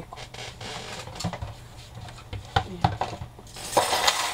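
Thin steel craft cutting dies clinking against each other as they are handled and set aside, with a few separate sharp clicks and a brief rustle near the end.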